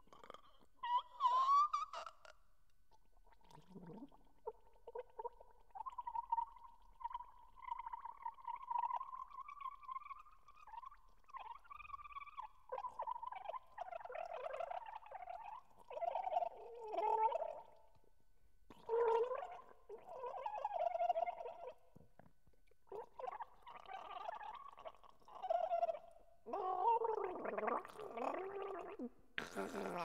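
Throat gargling performed as a contemporary composition for gargles. It opens with a long, steady pitched gargle, followed by short, broken gargled phrases that rise and fall in pitch, with brief pauses between them.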